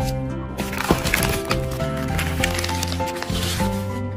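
Paper food packaging rustling and crinkling as it is handled, a dense crackle starting about half a second in, over background music with sustained notes.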